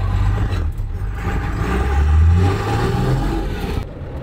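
Twin-turbo Cummins diesel engine in an off-road Jeep, heard from inside the cab, pulling under throttle; its pitch climbs as it revs up about two-thirds of the way in.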